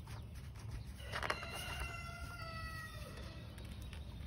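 A rooster crowing once, starting about a second in and lasting about two seconds, its pitch sliding gently down toward the end.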